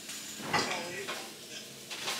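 Kitchen clatter while cooking: a knock of a dish or pan on the counter about half a second in, then faint handling noise of cookware and utensils.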